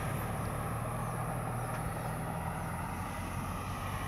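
A car engine running slowly close by, a steady low hum, as the car creeps out of a side road onto the main road.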